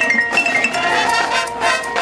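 High school marching band playing its field show, with the front ensemble's mallet percussion (bells and marimba) prominent in rapid struck, ringing notes.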